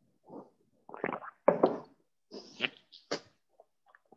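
A man drinking water from a mug: a handful of short gulps and swallows with breathy sounds between them, one of them sharper, about a second and a half in.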